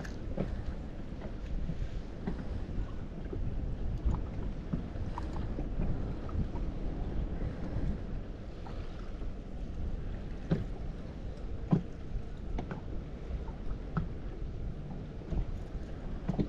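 Steady low wind-and-water noise on an open boat deck on choppy water, with a few faint clicks and knocks scattered through.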